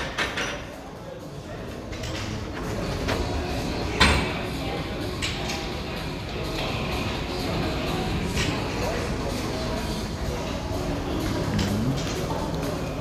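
Barbells loaded with bumper plates are set down on a rubber gym floor during repeated snatches. There is one loud thump about four seconds in and a few softer knocks later, over steady background noise with indistinct voices.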